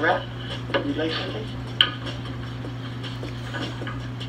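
Light clinks and clicks of hard objects being handled, with one sharp click a little under two seconds in, over a steady low hum.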